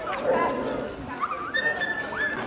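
Dog whimpering and yipping: short high whines sliding up and down, with one thin whine held briefly near the end.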